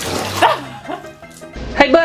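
A cat scrambling out of a bathtub of water with a splash and a short falling cry, then near the end a loud cat meow.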